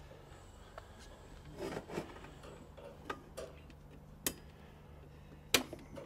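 A few light metallic clicks and knocks from handling a steel trunking lid and pressing turnbuckle clips into its holes, with two sharper clicks in the second half.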